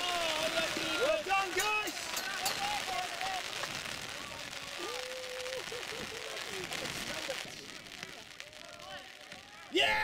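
Spectators' shouts and cheers reacting to a shot on goal in a youth football match, fading after a couple of seconds into a steady outdoor hiss, with one more call about five seconds in.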